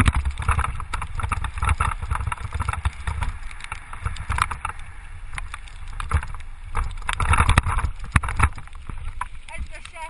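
Wheels rolling down a rough, wet gravel track: a steady low rumble with many rattling knocks and crunches, plus wind buffeting the microphone.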